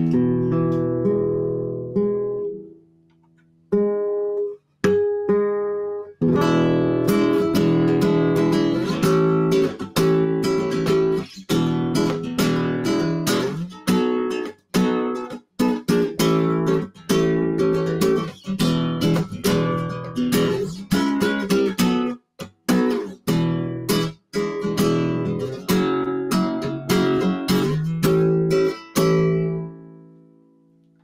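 Classical-style acoustic guitar playing a run of seventh chords in one E7 shape slid up and down the neck, with the G and B strings detuned 14 and 31 cents flat so each chord rings as a smooth, just-tuned harmonic seventh. After a short pause early on, a new chord comes about every second.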